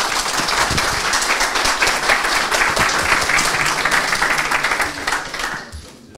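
Audience applauding, a dense clatter of many hands clapping that fades out near the end.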